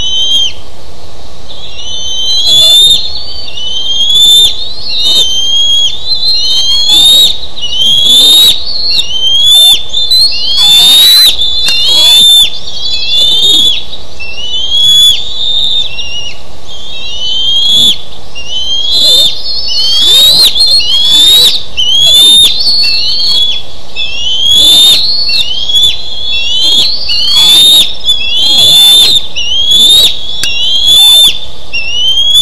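Seven-week-old bald eaglets giving repeated high, piercing call notes, one or two a second, each a short upward swoop: alarm calls at an intruding adult eagle on the nest.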